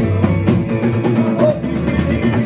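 Live band playing an instrumental stretch of a country song: two electric guitars over a drum kit and bass guitar keeping a steady beat.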